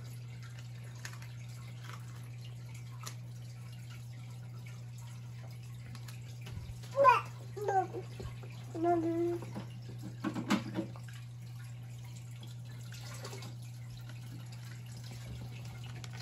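Aquarium filter running with a steady low hum and light water trickle. A few short voice sounds from a baby come in the middle, the loudest about seven seconds in.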